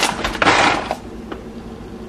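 A bag of frozen berries handled: a brief plastic rustle and clatter of frozen fruit, loudest for about half a second just after the start, then fading to quiet room sound.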